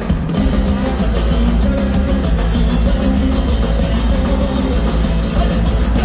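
Live band playing in a steady groove, acoustic guitars and a drum kit, captured on an audience recording.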